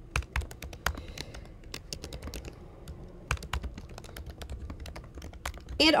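Typing on a computer keyboard: a run of irregular key clicks as a line of text is typed, thinning out briefly midway.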